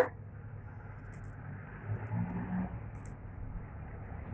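Quiet steady hiss of room noise with a couple of faint light clicks from plastic beads being handled on the thread, plus a faint low hum a little after two seconds in.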